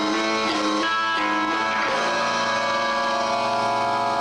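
A rock band's electric guitar and electric bass playing live, with no singing. The notes change in the first couple of seconds, then a chord is held ringing.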